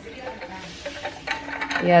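Water poured from a plastic bottle into a stainless steel vacuum flask, a steady stream running into the metal bottle.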